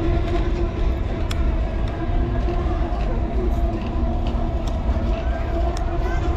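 Wind rumbling on the microphone over a steady droning hum, with faint crowd voices behind.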